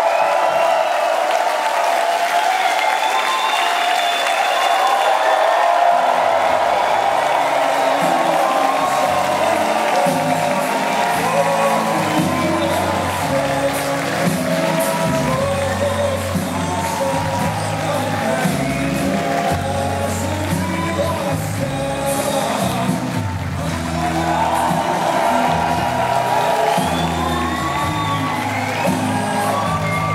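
Concert crowd cheering and whooping. About six seconds in, loud music with a bass line and singing starts and carries on with the crowd noise over it.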